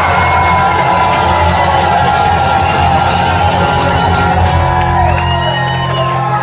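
A heavy-metal mariachi band playing live, loud sustained notes over a held low bass note that shifts about five seconds in, with the crowd cheering and whooping.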